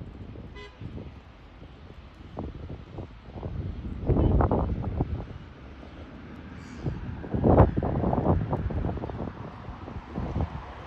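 Gusts of wind buffeting the microphone in irregular low rumbles, loudest about four seconds in and again about seven and a half seconds in. A brief thin pitched call sounds near the start.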